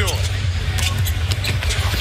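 Basketball dribbled on a hardwood court, a few sharp bounces, over steady background music in the arena.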